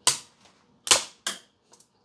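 A hard plastic SGC grading slab cracking under the jaws of diagonal cutters: three sharp snaps, one at the start and two close together about a second in, then two faint ticks near the end.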